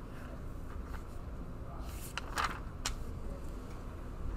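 Classroom room noise: a steady low hum, with two short clicks and a brief rustle a little over two seconds in.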